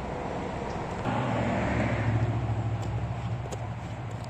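Traffic on a highway overpass: a steady rush of tyres and engines, with one vehicle growing louder about a second in and passing over, its low drone lingering.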